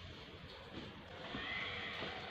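A high-pitched animal cry beginning a little over a second in.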